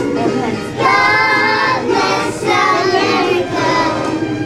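A group of young children singing a song together.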